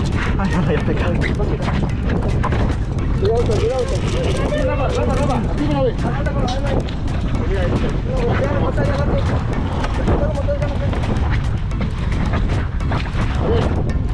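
Men's voices calling out over a loud, constant low rumble, with scattered small knocks.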